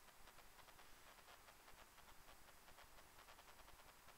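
Near silence: faint steady hiss with faint, irregular crackling.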